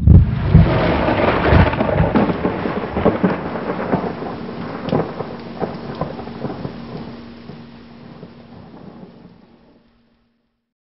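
Thunder rumbling and crackling over steady rain, loudest in the first few seconds and dying away gradually until it stops just before the end.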